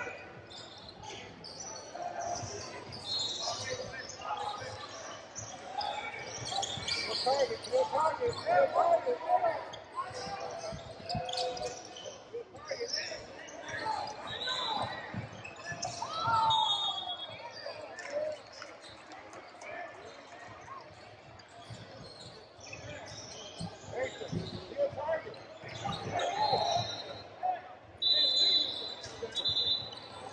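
Basketball game in a large hardwood-floored gym: the ball dribbling and bouncing on the court, short high sneaker squeaks now and then, and players and coaches calling out, all echoing in the hall.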